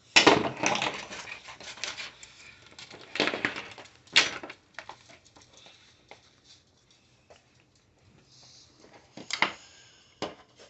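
Irregular clicks and clatters of small hard parts and tools being handled on a tabletop, busiest about a second in, with sharp knocks around three and four seconds in and again near the end.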